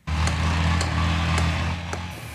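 Vehicle engines running: a steady low engine drone that starts abruptly and stays even, with a few faint clicks.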